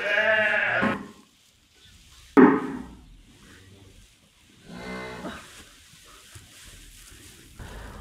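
Livestock calling three times: a call about a second long at the start, a sudden louder one about two and a half seconds in, and a fainter one about five seconds in.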